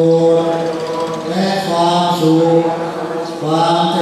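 Buddhist chanting: voices chanting together in unison on long held notes, with brief breaks about a second in and near the end.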